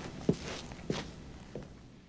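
Three footsteps about two-thirds of a second apart, each fainter than the last, as someone walks away.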